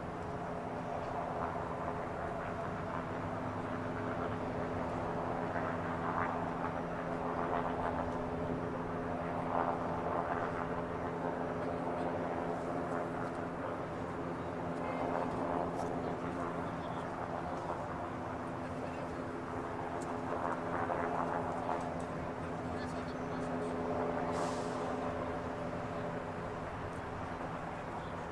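A steady, unchanging engine drone from running heavy machinery, with indistinct voices swelling and fading beneath it every few seconds.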